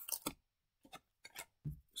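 A few short crinkles and clicks of a Pokémon booster pack's foil wrapper and trading cards being handled, with brief silences between.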